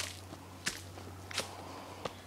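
Footsteps of a hiker walking up a dirt trail scattered with leaves: three crisp steps at an even walking pace, about two thirds of a second apart.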